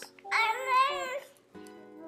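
A toddler's high-pitched, wavering whine lasting about a second.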